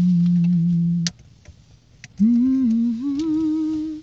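Unaccompanied humming in two phrases: a low note that slides up and holds for about a second, then after a short pause a higher phrase that steps up in pitch a few times and fades near the end.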